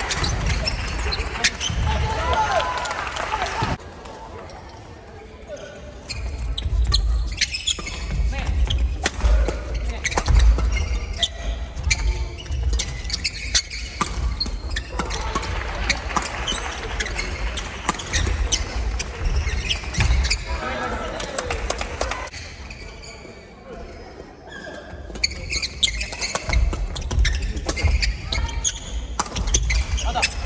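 Badminton doubles rallies in a large hall: rackets striking the shuttlecock in quick runs of sharp clicks, with players' feet thumping on the wooden floor and short shouts between shots. There are two short lulls between rallies.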